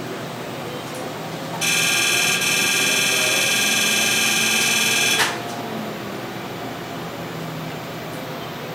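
A steady, high-pitched electronic buzzing tone from the laser-surgery equipment. It starts about one and a half seconds in and cuts off about three and a half seconds later, over a low steady room hum.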